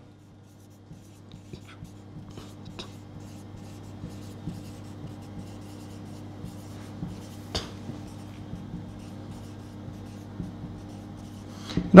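Marker pen writing on a whiteboard: faint, scratchy strokes and small ticks, over a low steady hum.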